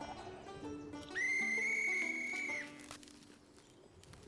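A single long whistle blast, a steady high note held for about a second and a half, starting about a second in and standing out as the loudest sound over light cartoon background music with plucked strings.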